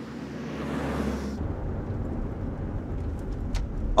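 An SUV driving on a road, with tyre and traffic noise. About a second and a half in, this cuts to a duller low rumble heard from inside the cabin, with a few faint ticks near the end.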